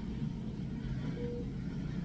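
Steady low hum of a hospital room, with one short, low beep a little past halfway through.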